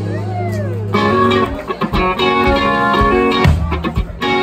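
Live band playing with electric guitar, electric bass and drum kit. A single note slides up and back down in the first second, then the full band comes in about a second in, with drum hits through the rest.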